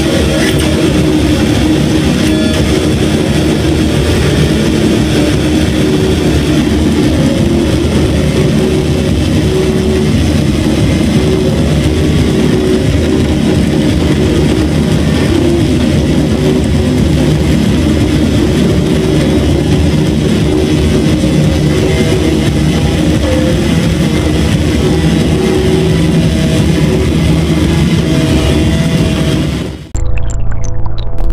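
Loud live experimental music captured on a phone: a dense, unbroken wall of sound heavy in the low end with long held tones and no clear beat, fading out in the last second.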